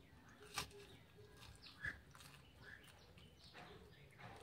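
Faint chewing and mouth sounds of a person eating by hand, with two short sharp clicks, one about half a second in and one near two seconds in.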